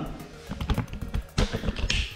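A quick, irregular run of light taps and knocks from a wooden internal door being handled and pushed against its old door lining.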